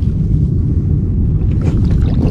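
Steady low rumble of wind buffeting an outdoor camera microphone.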